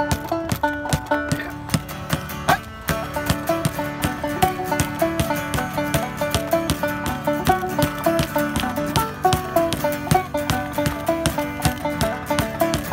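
Acoustic guitar strumming and a banjo picking quick rolls in an instrumental break, over a steady beat of sharp percussive clicks.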